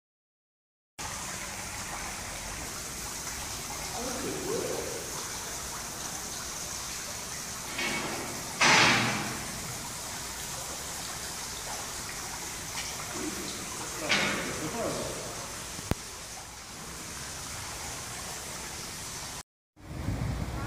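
Steady rushing hiss with faint voices now and then, broken by a short loud burst of noise a little before halfway and a smaller one about two-thirds of the way through.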